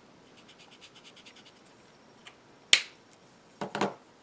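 A Copic alcohol marker's nib scratching quickly back and forth on paper as a yellow swatch is coloured in, faint and lasting about two seconds. A sharp plastic click follows, then a short clatter of clicks near the end as the marker is handled and put down.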